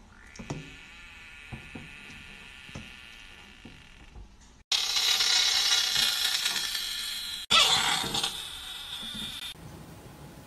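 A Budgett's frog's defensive scream, a loud, harsh hissing scream that starts suddenly about halfway through and lasts about three seconds, then a second scream that fades away. Before it, only a few faint clicks.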